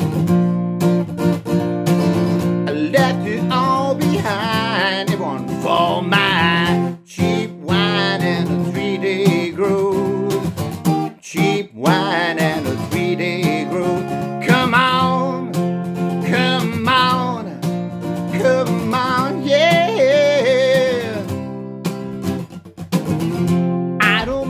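A man singing with his own strummed acoustic guitar, the chords ringing steadily under the vocal line. The singing and guitar drop out briefly twice, about seven and eleven seconds in.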